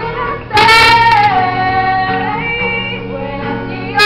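Women singing with a strummed acoustic guitar. A loud held note comes in about half a second in and then slides down.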